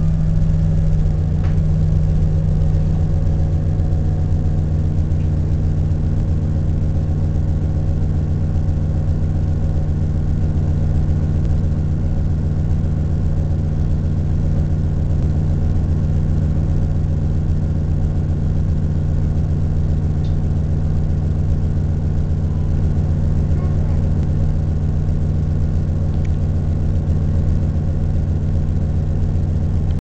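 Orion VII transit bus engine running with a steady low hum that holds an even pitch throughout, heard from inside the passenger cabin.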